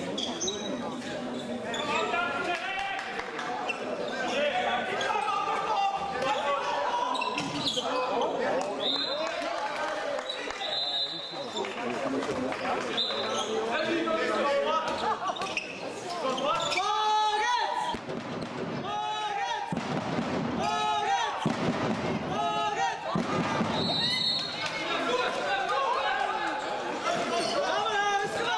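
A handball bouncing and being handled on a sports-hall floor, with brief high shoe squeaks and players' and spectators' shouts and voices echoing in the hall. The shouting is loudest a little past the middle.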